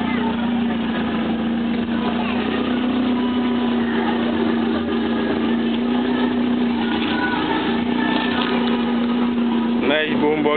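A steady low hum, like an engine running at idle, under a haze of indistinct background voices.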